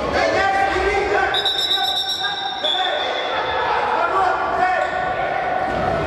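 Futsal match sounds echoing in a large sports hall: players and coaches shouting, with the ball being kicked and bouncing on the court.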